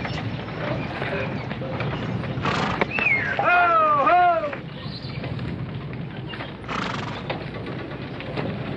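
A horse neighs about three seconds in: a whinny that falls in pitch in several quick pulses. Under it runs a steady clatter of hooves and moving wagons.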